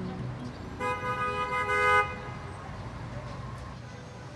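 A vehicle horn honks once about a second in, a steady held note of roughly a second that cuts off sharply, over the rumble of street traffic.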